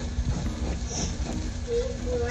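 A fork scraping the scales off a rainbow trout on a plastic cutting board: repeated scratchy scraping strokes.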